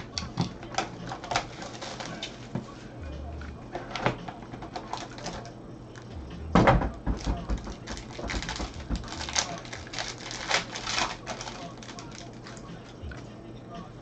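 Packaging being handled and opened by gloved hands: plastic wrapping crinkling and rustling with many small clicks and taps, and a louder crackle of wrapping about six and a half seconds in.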